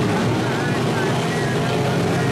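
Several dirt-track modified race cars running together around the oval: a loud, steady blend of engines at racing speed.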